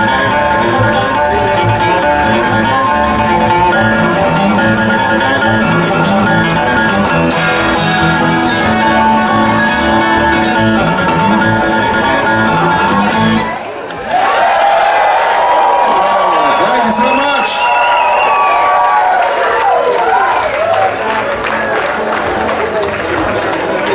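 Live bluegrass band playing an instrumental passage on banjo, acoustic guitar and upright bass. The tune stops suddenly a little past halfway, and the crowd cheers and whoops.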